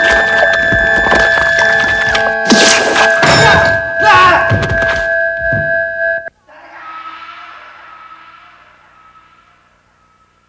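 Horror film soundtrack: loud, dense music and sound effects with steady held tones and sharp hits, cutting off abruptly about six seconds in. A quieter held tone then fades away.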